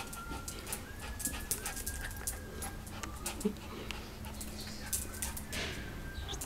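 Small shaggy terrier-type dog whining: a series of thin, high-pitched whines, each short and steady.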